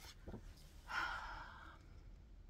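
A soft, breathy exhale like a sigh, about a second in, with no voiced pitch.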